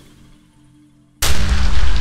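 A soft fading tail for about a second, then a sudden loud cinematic boom hit with a deep low end that carries on as the music comes in.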